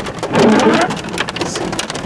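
Hail hitting a truck from outside while heard inside the cab: a dense, irregular patter of sharp ticks over a rushing hiss.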